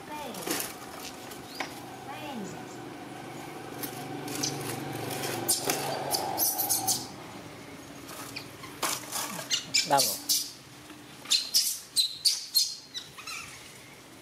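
Baby macaque giving a run of short, high-pitched squeaks in the second half, with a person's voice calling to it.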